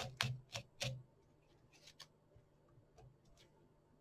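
Short scratchy strokes of a Velcro brush raked through a fly's body fibres, four quick ones in the first second, followed by a few faint ticks of fingers handling the fly.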